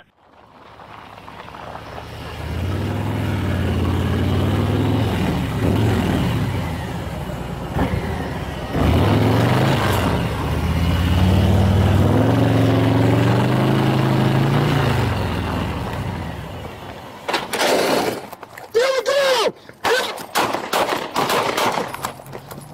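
A motor vehicle engine revving, its pitch rising and falling in long sweeps for about fifteen seconds. It is followed over the last few seconds by a rapid run of sharp cracks and clicks.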